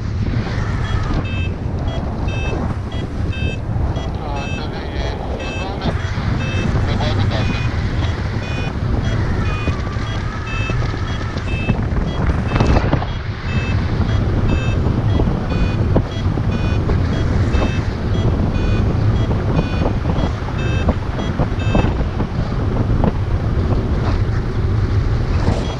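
Airflow buffeting the microphone of a paraglider in flight, overlaid with a variometer beeping in rapid, short, high tones, the beep pattern that signals the glider is climbing in lift.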